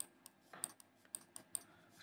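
Faint, irregular clicking of a computer pointing device, about eight short clicks in two seconds, as marks are drawn on an on-screen document.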